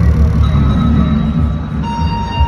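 Loud live band music in a hall: a heavy, droning low end with sustained, held guitar tones over it.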